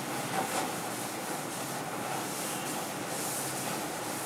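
Board duster rubbing across a chalkboard, a few wiping strokes over a steady background hiss.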